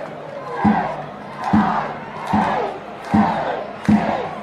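Chanting, shouting voices over a steady drum beat that starts about half a second in and hits about five times, a little more than one beat a second, with crowd noise under it.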